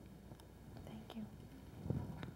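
Quiet, soft speech: a low-voiced "thank you" spoken away from the microphone, with a short low bump near the end.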